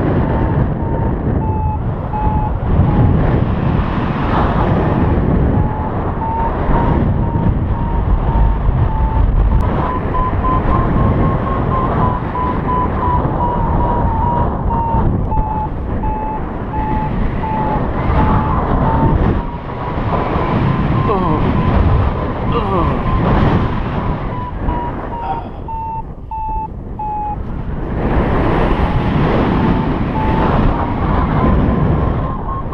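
Paragliding variometer beeping a steady run of short climb-tone beeps whose pitch drifts gently up and down, over wind rushing across the microphone in flight. The beeping breaks off for a couple of seconds near the end, then resumes.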